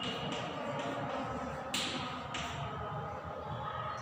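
Low room noise with a brief rustling hiss, about half a second long, a little under two seconds in.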